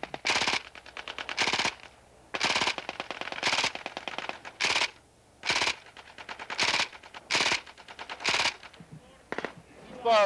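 Light machine gun firing blanks in short automatic bursts of a few rounds each, about ten bursts roughly a second apart. The gun carries a red blank-firing adapter, so this is training fire.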